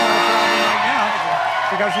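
A game-show electronic sound effect: a steady chord of tones that stops about a second in as the ball settles into a prize slot. After it, studio audience cheering and shouting.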